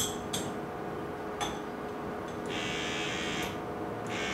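A motorized pipette controller's small pump buzzing steadily for about a second, drawing liquid sample up into a glass pipette, after a few light clicks of handling.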